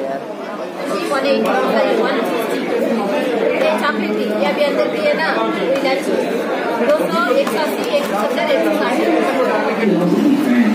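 Chatter: several people talking at once in a large room, with a woman's voice among them.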